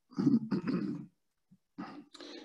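A man's brief wordless vocal sound, heard through a video-call microphone, that cuts to dead silence about a second in; a fainter sound starts again near the end.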